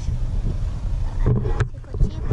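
Interior rumble of a moving car, heard from the back seat, with a short sharp knock about one and a half seconds in.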